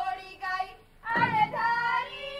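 A high voice singing sustained, gliding notes in two phrases, with a short pause just before a second in.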